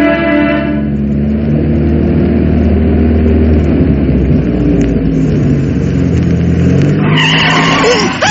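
Radio-drama sound effect of a car driving with its engine running steadily, ending about seven seconds in with a loud screech of tyres under sudden hard braking. A closing music cue fades out in the first second.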